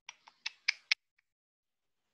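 Computer keyboard keys being typed: a quick run of about five keystrokes in the first second, then one faint tap.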